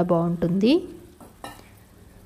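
Mushroom masala curry sizzling faintly in a non-stick pan, just after tomato paste has been poured in, with two light clicks about a second and a half in. A woman's voice is heard briefly at the start.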